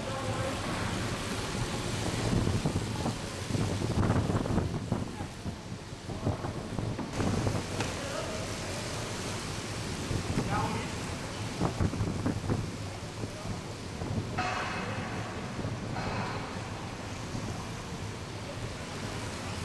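Track bikes riding past on the wooden velodrome boards: a continuous rumbling whoosh of tyres on wood that swells as riders and a bunch go by, echoing in a large hall. Voices call out briefly a few times.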